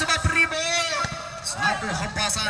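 A man commentating, with a drawn-out call about half a second in.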